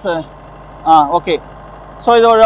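Speech: a short spoken fragment about a second in, between pauses, over a steady low background hum.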